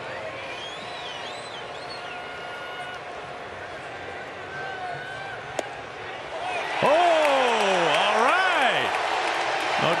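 Ballpark crowd murmur. About halfway through comes a single sharp pop as the pitch hits the catcher's mitt. A couple of seconds later the crowd cheers the called third strike, over a loud shout that swoops up and down in pitch.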